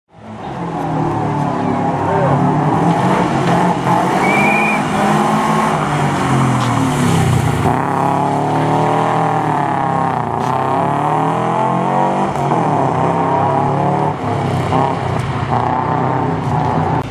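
Subaru Impreza rally car's engine revving hard, its pitch climbing and falling repeatedly with gear changes and lifts for turns.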